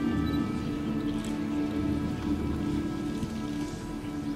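Soft background music of held low chords, slowly fading.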